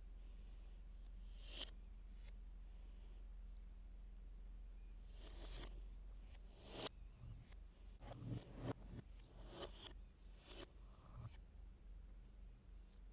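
Plastic Lego pieces clicking and rattling as they are handled and pressed together: scattered soft clicks, the sharpest a little before seven seconds in and a quick run of them around eight seconds, over a steady low electrical hum.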